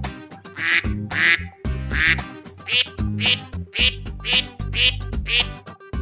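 A string of duck quacks, about nine of them at roughly two a second, used as a sound effect for a duck-shaped toy vehicle, over background music.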